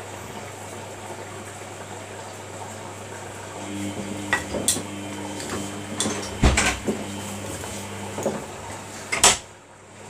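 Samsung front-loading washing machine tumbling a wet load during the wash: the drum motor whines steadily for a few seconds, while hard items in the load knock and clank against the drum several times. The loudest clank comes near the end, and then the machine goes quieter as the drum stops.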